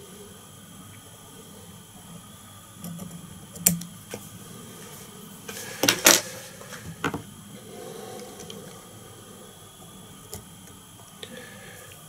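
Fly-tying scissors snipping off the excess feather ends at the vise: a few sharp clicks, the loudest about six seconds in, with faint handling noise between them.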